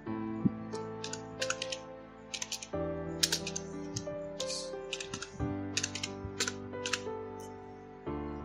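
Computer keyboard keystrokes clicking in short irregular runs as a line of text is typed. Soft background music with sustained chords runs underneath.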